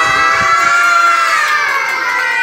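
A group of young children cheering and shouting together, many voices in one long held shout that rises at the start and falls away near the end.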